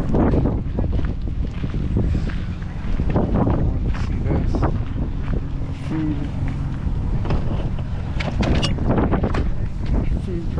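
Wind buffeting the microphone: a heavy, gusting low rumble.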